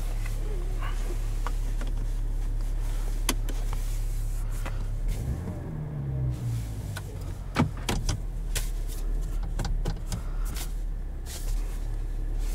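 The 2021 Chevrolet Silverado's 3.0-litre Duramax inline-six turbo diesel idling, heard from inside the cab as a steady low drone. A tone falls in pitch about five seconds in, and several sharp clicks are heard.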